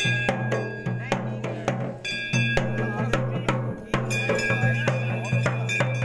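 Drums beaten in a fast, steady rhythm of about four strikes a second, with a bell-like metallic ringing over them.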